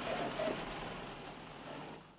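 A truck engine idling faintly and steadily, fading out toward the end.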